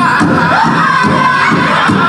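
Powwow drum group: several singers in loud, high-pitched unison over a big drum struck in a steady beat of about three strokes a second.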